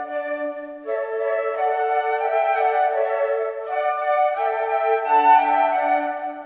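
Ensemble of concert flutes playing together in harmony, holding long notes that change together about a second in and again past the middle.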